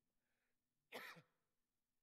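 A man gives one short cough to clear his throat about a second in, picked up by his handheld microphone.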